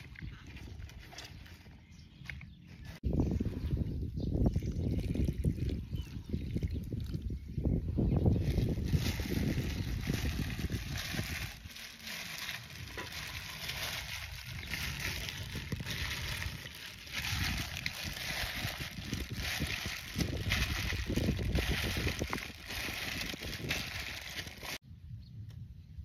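Clear plastic bag crinkling and rustling as it is handled over a bowl of raw shrimp, chili and vegetables, the crackle dense and continuous from about a third of the way in, with the wet contents sloshing.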